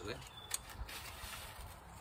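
Handling noise from a folding bow saw packed in its carry tube: a sharp click about half a second in, then a couple of faint ticks and rustles as the tube is worked open.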